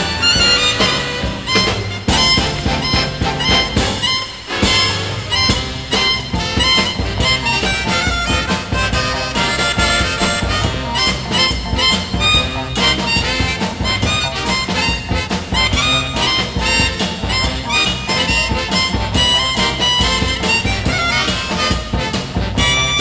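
Harmonica playing the lead over a live soul band in an instrumental stretch of a live recording.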